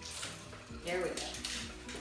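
Metal links of a large, heavy prong collar clinking as it is unfastened and taken off a dog, over steady background music.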